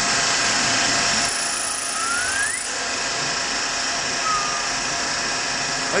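Metal lathe running with a boring bar cutting into an OHC motorcycle engine's aluminium crankcase, enlarging the cylinder opening for a bigger bore. The machining noise is steady, with a brief rising whine about two seconds in.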